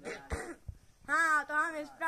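A person clearing their throat at the start, followed about a second in by a short stretch of voice.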